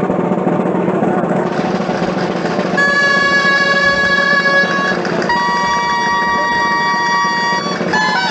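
Crowd hubbub with a drum, then about three seconds in a dulzaina, a loud reedy double-reed folk shawm, starts sounding a long held note. It moves to a second held note about five seconds in, starting the tune for the street dance.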